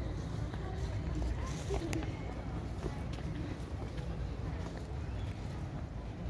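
Indistinct background voices of people at a distance over a steady low rumble, with no clear foreground sound.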